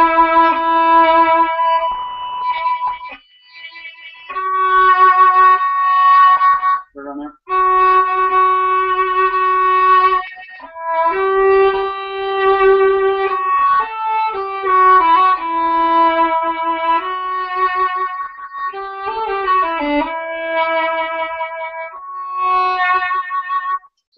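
Acoustic violin bowed in a slow phrase of long held notes with vibrato, with short breaks between strokes. The bow weight is added toward the end of each stroke, giving a richer, deeper end to the vibrato.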